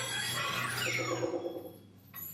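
Electronic, synthesizer-like tones from Akousmaflore, an installation of hanging potted plants that sound when touched: high steady whistles and a falling glide in the first second, fading out near the end.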